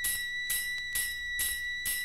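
Background music, the opening of an electronic track: a steady high ringing tone under a crisp high beat repeating just over twice a second.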